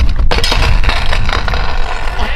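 A kick scooter crashing on concrete: irregular clattering and scraping of the scooter's metal deck and wheels as the rider falls off a bunny hop, over a steady low rumble.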